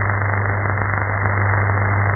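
Shortwave AM broadcast received on an RTL-SDR with the programme audio silent: only the carrier comes through, giving steady, muffled radio hiss and static with a low hum beneath.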